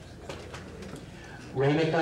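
Room murmur and faint clatter, then about a second and a half in a man's voice lets out a loud, drawn-out low hoot of approval, a wordless "whooo" cheer that bends up in pitch.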